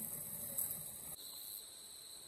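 Steady, high-pitched chorus of insects in the bush. About a second in, the sound changes at a cut and a second steady, slightly lower whine joins in.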